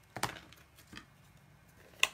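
Ink pad cases being snapped shut on the table: a sharp click about a quarter second in with a few lighter ticks after it, and another click about a second in.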